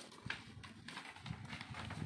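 Faint, irregular soft knocks and light clicks, like handling noise.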